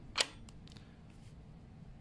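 A sharp click about a fifth of a second in, followed by a much fainter one, over quiet room tone.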